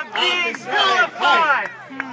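Rally crowd shouting, with a man's raised voice loudest, through a megaphone; the words can't be made out.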